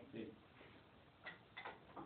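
Near silence broken by two faint, sharp clicks, a fraction of a second apart, about a second and a half in.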